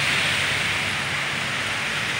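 Heavy rain falling steadily, an even hiss of rain on the street and nearby surfaces.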